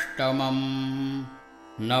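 A man's voice chanting a Sanskrit stotra in a melodic, sung recitation. He holds one long note that fades out about a second and a half in, then starts the next line near the end.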